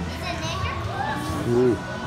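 Indistinct voices and children's chatter in a gymnastics hall over a steady low hum, with one short, louder nearby voice about three-quarters of the way through.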